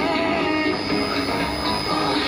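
An Arabic song received on shortwave, playing through a radio's loudspeaker under a steady hiss of static from the shortwave signal.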